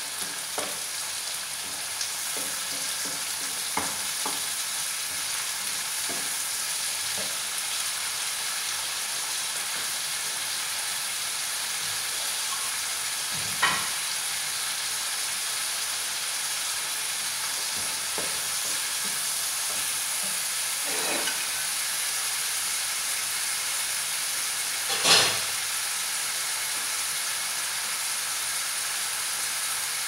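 Onion, ginger, garlic and shrimp sautéing in oil in a frying pan: a steady sizzle, with a wooden spatula stirring and clicking against the pan in the first few seconds. Two sharp knocks stand out, the louder one about 25 seconds in.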